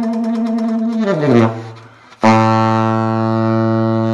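Keilwerth 'New King' tenor saxophone playing a held note that slides down into the low register and fades out. After a short break, a loud low note starts suddenly and is held steadily to the end.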